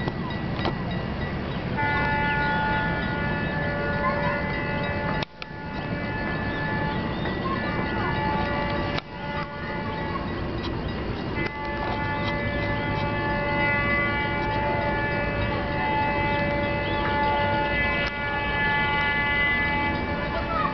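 Horn of an approaching GT-22 diesel locomotive sounding a steady chord of several tones: one blast of about three seconds starting about two seconds in, then a long blast from about eleven seconds on, over a low rumble. The sound drops out briefly twice, near five and nine seconds.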